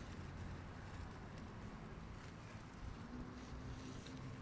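Faint outdoor background noise: a low, steady rumble, with a faint steady hum joining about three seconds in.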